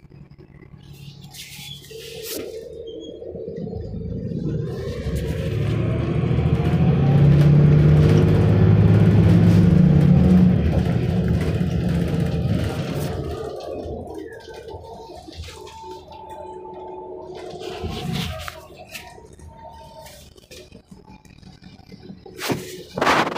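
Cummins ISL diesel engine and Voith 864.5 transmission of a 2008 Van Hool A300L transit bus heard inside the cabin, building up under acceleration with a rising whine to its loudest about eight seconds in, then easing off and going quieter from about fourteen seconds.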